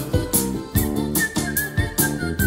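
Live band playing the song's instrumental ending with a steady beat, guitar and chords. About a second in, a high whistled melody comes in over the band.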